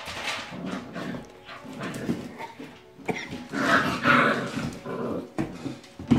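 Puppies growling at each other in rough play, in irregular bursts that are loudest about four seconds in.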